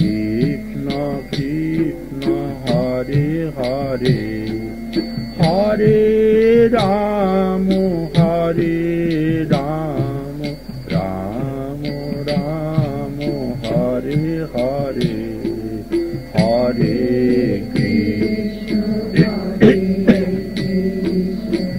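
Devotional kirtan: a singing voice carries a melodic chant over sustained held tones, kept in time by a steady beat of sharp strokes about two to three a second.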